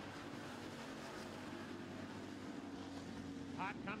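Several dirt-track street stock race cars running at racing speed: a steady drone of engines, with a man's voice coming in near the end.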